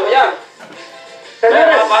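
Voices and music from a television broadcast, recorded off the TV's speaker: a voice, then a quieter stretch of held musical notes about halfway through, then voices again.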